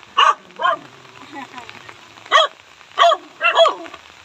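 A dog barking: about six short barks, two near the start and a quicker run of four in the second half.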